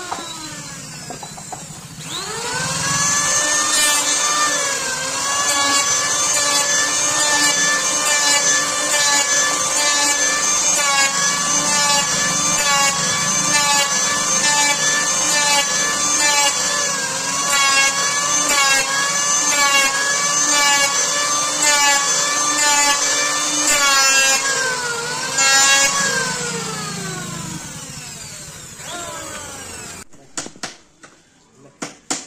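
Electric hand planer spinning up about two seconds in, running at a steady high whine while it shaves the edges of plywood panels, with repeated rasping strokes as the blades bite, then winding down with a falling pitch near the end.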